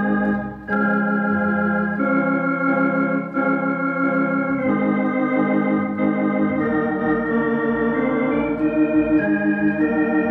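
Elka X19T electronic organ playing a slow piece in A-flat major, with sustained chords over a low bass line. The chords change about every two seconds, with a brief break about half a second in.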